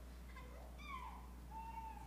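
Faint, high-pitched wordless vocal sounds: a falling cry about a second in, then a held note near the end, over a steady low hum.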